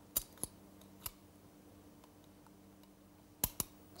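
Sharp clicks of a shield being fitted onto a revolver: three light clicks in the first second, then two louder clicks close together near the end as the shield locks into place.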